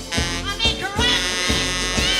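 A live band playing an upbeat number with a steady drum beat of about two strikes a second. A rubboard (frottoir) is scraped with gloved hands, and a saxophone plays.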